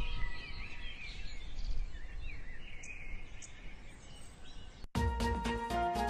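Birds chirping over a steady outdoor hiss, then an abrupt cut to music with a beat about five seconds in.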